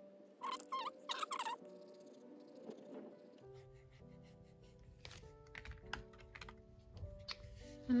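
Background music with held notes. About half a second in comes a quick run of four scratchy strokes: a stiff flat paintbrush scrubbing across textured watercolour paper.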